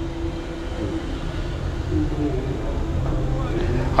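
A man humming softly in short low phrases, over a steady low rumble.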